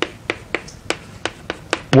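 Chalk tapping and clicking on a chalkboard as a word is written in capital letters: a quick, uneven series of sharp taps, about four or five a second.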